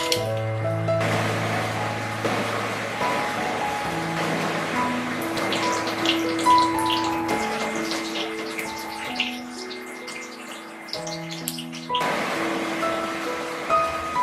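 Battered pumpkin-flower fritters sizzling in hot oil with scattered crackles, the sizzle starting about a second in. This is their second frying, done to make them extra crisp. Background music plays throughout.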